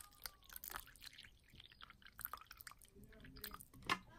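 Water poured in a faint trickle and drips into a small clear plastic water dish, with scattered small clicks and a sharper click near the end.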